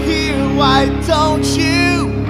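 A hard rock song playing: distorted electric guitar and bass hold a sustained bed under a wavering, bending lead melody.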